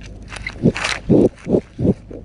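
Feedlot cattle sniffing and nosing at a GoPro up close: a quick run of short breathy puffs, about three a second, with the muzzles rubbing against the camera housing.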